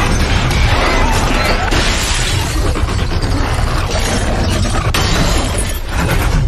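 Film sound mix of glass shattering and lab equipment crashing as an alien creature smashes through a laboratory, over a dense music score with a steady low rumble.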